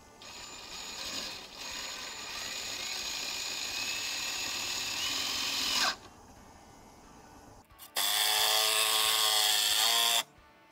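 Cordless drill driving three-inch galvanized screws into wood: a run of about five and a half seconds that winds down with a falling pitch, then after a short pause a second, louder run of about two seconds.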